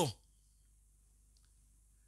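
A man's spoken phrase trails off at the very start, followed by a quiet pause in which one faint, short click is heard about one and a half seconds in.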